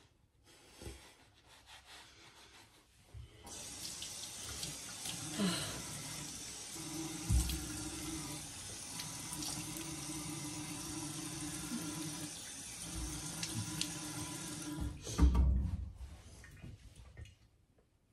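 Bathroom sink faucet turned on a few seconds in and running steadily into the basin while a face is rinsed, then shut off about three-quarters of the way through with a loud knock as it stops.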